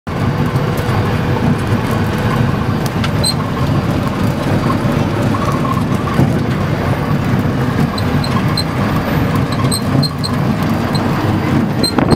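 Jeep driving on a rough dirt road, heard from inside the doorless cab: a steady engine and road rumble.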